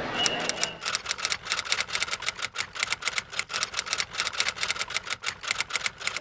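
A fast, uneven run of sharp mechanical clicks like typewriter keys, roughly eight to ten a second, used as a sound effect under a title card. A brief high tone sounds just after the start.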